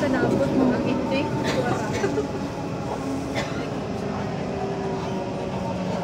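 Steady running noise of a metro train heard from inside a crowded passenger carriage, with passengers' voices over it.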